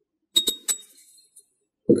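A thin metal spatula clinking sharply three times against a hard dish, each clink with a brief high ring, then a faint tap a little later.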